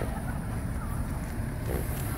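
Pickup truck running slowly on a gravel road, heard from inside the cab with the window down: a steady low rumble.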